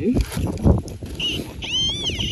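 A high whistle gliding up and down near the end, after soft scrapes and knocks of a hand tool digging in soil.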